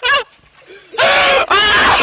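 A person screaming: a brief high yell at the start, then a long, loud, high-pitched scream beginning about a second in.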